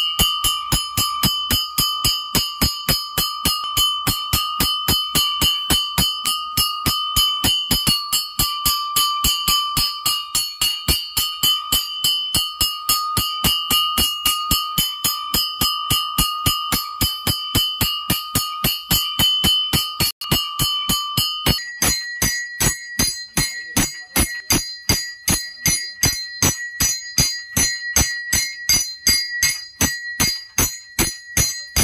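Temple bell rung in a steady fast rhythm, about three strokes a second, each stroke ringing on. About two-thirds of the way through the ringing jumps to a different, higher pitch.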